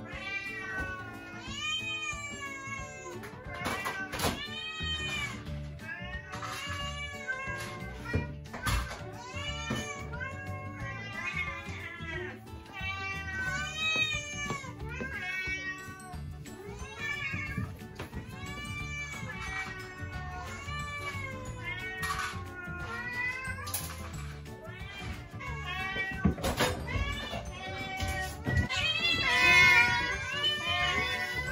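Several domestic cats meowing over one another in a continual overlapping chorus, each meow rising then falling: hungry cats begging while their breakfast is prepared. Background music plays underneath.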